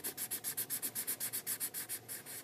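Sharpie marker tip scribbling rapidly back and forth on paper, about eight strokes a second, filling in a solid black area.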